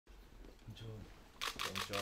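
A rapid burst of camera shutter clicks, starting about one and a half seconds in, over faint voices in a small room.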